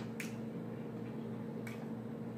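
Two soft clicks about a second and a half apart while snow crab is eaten and dipped in melted butter, over a steady low hum.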